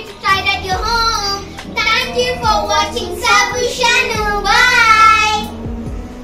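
A child singing a short tune in several phrases, ending on a long wavering held note about five and a half seconds in.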